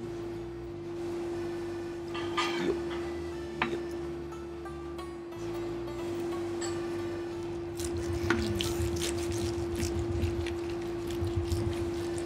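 Background music under the scraping and clinking of a knife and fork cutting into a large roast on a plate. The clicks come more often in the last few seconds.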